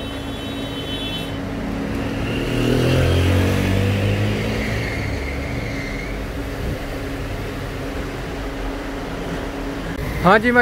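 A road vehicle's engine passing by, swelling to its loudest about three seconds in and then fading, over steady street traffic noise and a constant low hum.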